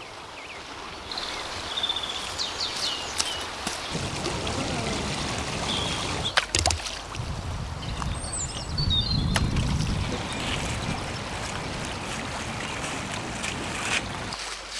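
Shallow river running over a gravel bed: a steady rush of flowing water, with a few short high chirps and a couple of sharp clicks partway through.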